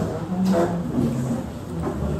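Indistinct voices of several people talking at once in a room, with no single clear speaker.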